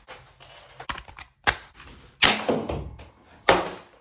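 Toy foam-dart blaster shots: a couple of light clicks, then two louder, sharp shots about a second and a quarter apart in the second half.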